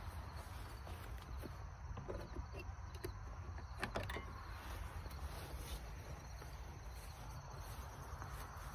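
Quiet handling and walking noise from a hand-held phone: a steady low rumble with soft rustles and scattered clicks, and one sharper click about four seconds in.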